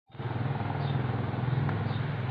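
An unseen engine running steadily: a low hum with a fast, even pulse.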